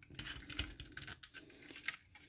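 Faint small clicks and rubbing of hard plastic toy parts being handled and pressed together as the Transformers Kingdom Cyclonus figure's tabs are lined up with their slots, with a sharper click near the end.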